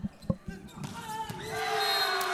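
A volleyball being struck, with a few sharp smacks in the first half second as it is set and spiked. Then crowd noise rises and builds in the gym.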